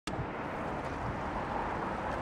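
Steady wind noise on the microphone over a constant outdoor rumble, with no distinct motor whine or knocks standing out.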